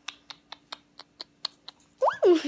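A puppy's claws clicking on a hard floor as it walks over, about four light, evenly spaced clicks a second.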